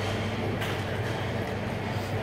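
Supermarket background: a steady low hum under an even wash of store noise, with no distinct events.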